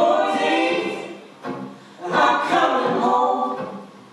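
Several voices singing together in harmony, with little accompaniment, in two long phrases separated by a short pause.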